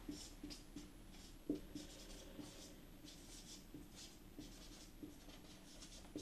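Whiteboard marker writing on a whiteboard: a faint run of short strokes, with a sharper tick about one and a half seconds in.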